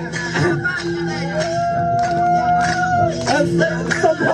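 Traditional dance music played through a PA: a man's voice chants into a microphone and holds one long note through the middle, over a steady low drone and regular percussive beats.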